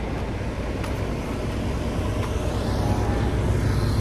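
Steady low rumble of motor traffic and vehicle engines, getting a little louder toward the end.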